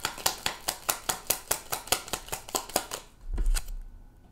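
A deck of tarot cards being hand-shuffled, the cards snapping against each other about five times a second; the shuffling stops about three seconds in, followed by a soft low thump.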